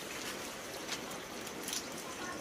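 Steady rain falling, an even hiss with a couple of sharper drop taps.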